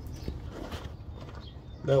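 Low steady background hum with a few faint ticks, and a word spoken near the end.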